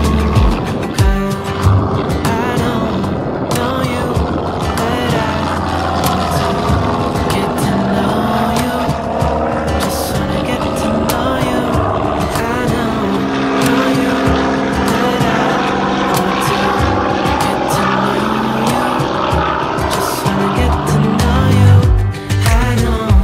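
A background pop song plays over the steady drone of a single-engine propeller airplane's piston engine flying overhead.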